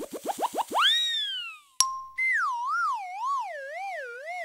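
Cartoon sound effects: a quick run of short rising chirps, then a long boing that swoops up and falls away, a short ding, and then a wobbling, warbling tone that slowly slides downward.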